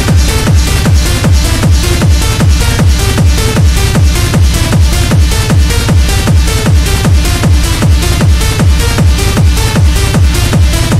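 Techno / tech house track playing in a DJ mix: a steady four-on-the-floor kick drum at about two beats a second, with a repeating synth figure over it.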